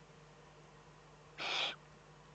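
Eurasian eagle-owl chick giving a single short, harsh, rasping hiss about a third of a second long, past the middle of the clip.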